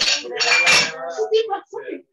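Clinking and clattering like dishes and cutlery, mixed with brief voices, coming through an open microphone on a video call.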